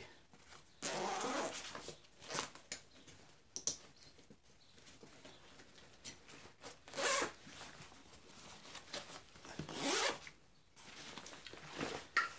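Zipper of a 5.11 Tactical nylon backpack being pulled open around the main compartment in a series of separate strokes with pauses between them, along with the rustle of the fabric being handled.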